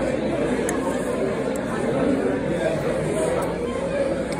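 Restaurant dining-room chatter: many people talking at once in a steady babble of voices.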